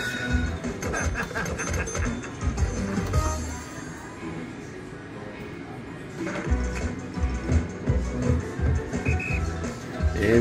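Slot machine game music and sound effects from a Cops 'n' Robbers Big Money bonus round. There is a quieter stretch in the middle, then a louder big-win celebration jingle starts about six seconds in.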